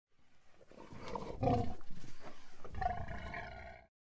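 Wild boar grunting close up as it roots in snow. The sound starts just after the beginning and swells, with louder calls about a second and a half in and again near three seconds, then cuts off just before the end.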